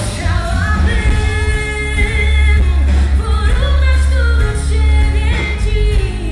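Live pop music: a woman singing into a microphone, holding long notes over a band with heavy bass and drums.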